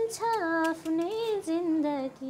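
A young girl singing alone in long held notes that slide from one pitch to the next.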